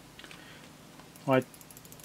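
Logitech M90 mouse button microswitches on the bare circuit board, pressed by finger to make a scattering of faint, quick clicks. This works isopropyl alcohol cleaner into the switches, whose faulty left button was clicking multiple times.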